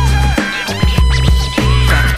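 DJ turntable scratching over a hip-hop beat: the scratched sample sweeps up and down in pitch over repeating heavy bass hits.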